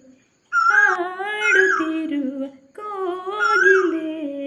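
A woman's voice, unaccompanied, singing a wordless melody: two flowing phrases of about two seconds each, separated by short breaks.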